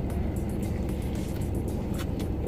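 Steady low rumble inside a car cabin, typical of the engine idling, with faint music over it.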